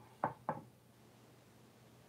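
Two quick knocks, about a quarter second apart, then quiet.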